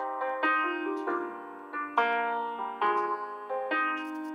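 Slow piano music: single notes and chords struck about once or twice a second, each left to ring and fade over a steady low held note.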